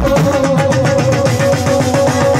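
Live Punjabi band playing an instrumental passage on keyboards, electric guitar and dhol drum, with a fast, steady beat under a held keyboard note.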